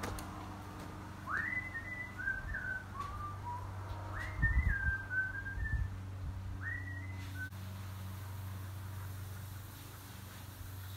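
A person whistling three short phrases, each sliding up to a high note and then stepping down through a few lower notes, with pauses between. A few dull low thumps come around the middle, and a faint steady low hum runs underneath.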